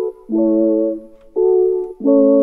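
Soft synth chords from a sine-wave patch with bit crushing, played as separate held chords about a second long with short gaps between them.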